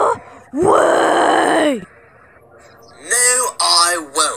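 A voice actor's drawn-out angry groan, about a second long, rising then falling in pitch. It is followed by spoken words near the end.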